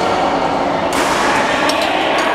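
Steady din of a busy indoor badminton hall, with a sharp smack of a racket hitting a shuttlecock about a second in and a couple more quick hits shortly after.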